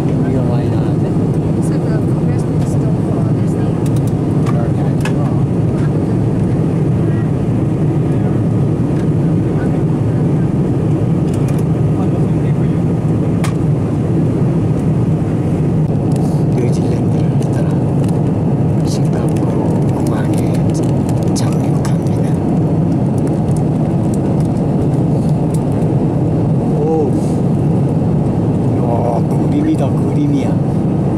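Steady cabin noise of a jet airliner in flight: a constant low rush of engines and airflow, with faint voices murmuring at times.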